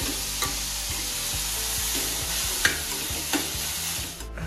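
Finely chopped capsicum and carrot sizzling as they are stir-fried in a steel pan, a steel spoon stirring them with a few sharp clicks against the pan.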